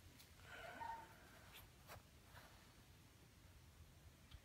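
Near silence: quiet room tone with a brief faint pitched sound about half a second in and a few faint clicks.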